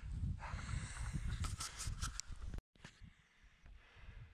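A man breathing hard to catch his breath, in noisy puffs over a low rumble on the microphone. The sound cuts off abruptly about two-thirds of the way through and stays faint after.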